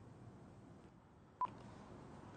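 A single short electronic beep, a brief tone blip with a click about one and a half seconds in, over faint room tone: an edit beep marking a jump in the recording's time.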